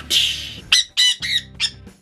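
A pet conure squawking: one harsh screech, then four short, sharp calls in quick succession.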